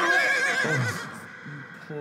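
A high, quavering wail lasting about a second, then lower, halting cries that fall away and fade.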